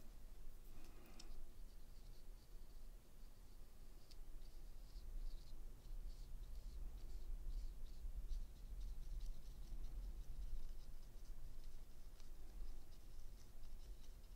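Fine watercolor brush stroking and dabbing on embossed watercolor paper: faint, irregular soft scratches, over a low steady hum.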